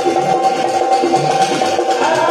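Rajasthani folk ensemble playing an instrumental passage: steady dholak drum strokes under a harmonium holding one high note over a quick repeating melody.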